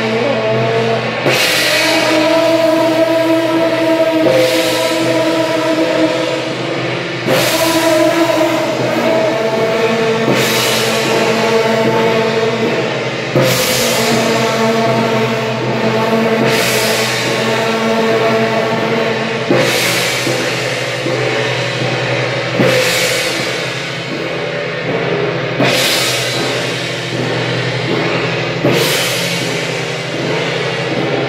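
Large hand-held bronze gongs and cymbals of a Taiwanese temple procession troupe struck together in a slow, even beat, about one crash every three seconds. Each crash is left to ring on.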